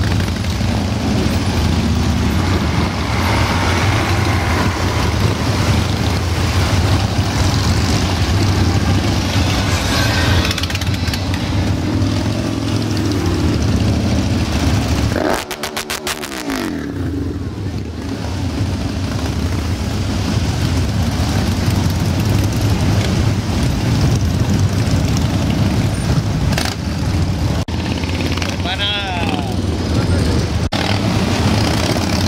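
A stream of Harley-Davidson motorcycles riding past, their V-twin engines running with a loud, steady low rumble that dips briefly about halfway through.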